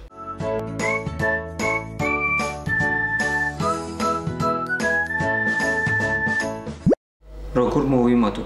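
Upbeat intro jingle: a quick melody of bell-like notes over a steady beat. It ends in a short rising sweep that cuts off suddenly, leaving a moment of silence.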